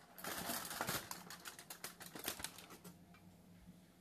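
Aluminum foil crinkling as it is peeled back off a foil pan: a dense run of crackles that thins out after about three seconds.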